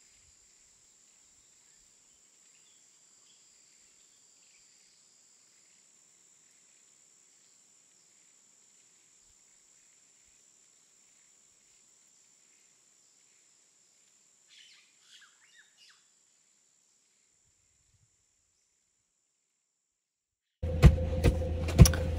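Faint outdoor ambience: a steady high-pitched insect drone with scattered bird chirps, and a short flurry of bird calls about two-thirds of the way through. Near the end, a sudden much louder noise cuts in.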